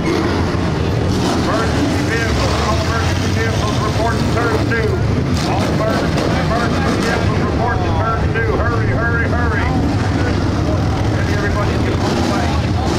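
Pack of dirt-track stock cars running through a turn: a loud, steady din of race engines.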